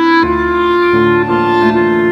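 Chamber music: a clarinet playing a melody of long held notes over piano accompaniment.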